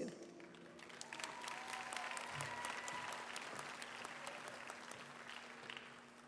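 Audience applauding in a large hall, the clapping building about a second in and slowly fading away toward the end.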